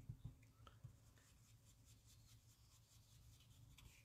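Near silence, with a few soft taps in the first second and a faint brushing: a blending brush being dabbed on an ink pad and swept over die-cut cardstock leaves.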